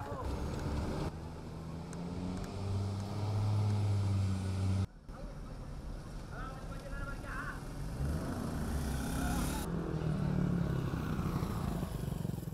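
Motor vehicle engines running and passing on a road, the engine note swelling and rising for a couple of seconds in the middle, with the sound cutting off abruptly at edits. Some voices are heard.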